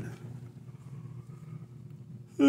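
Quiet room tone: a faint steady hum under low background noise.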